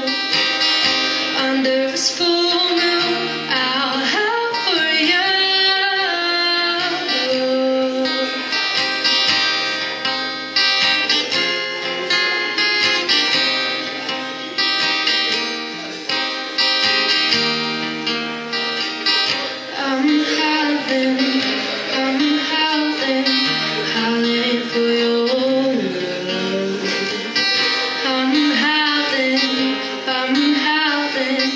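A woman singing while playing an acoustic guitar, a solo live song performance.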